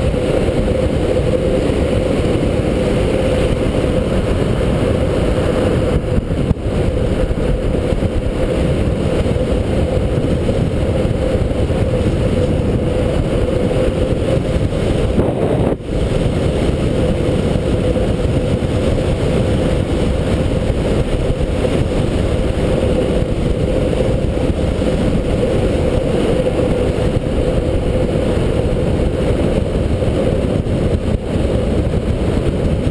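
Steady rush of wind buffeting a helmet-mounted camera microphone at downhill longboarding speed, mixed with the rolling roar of longboard wheels on asphalt, with two brief dips in the noise.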